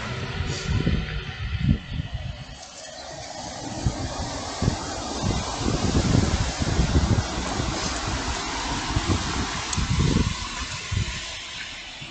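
Wind buffeting a phone's microphone in irregular low gusts, over street traffic noise that swells about halfway through.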